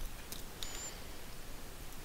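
A few faint computer mouse clicks over a steady low hiss of room and microphone noise, with a brief thin high whistle just after the clicks.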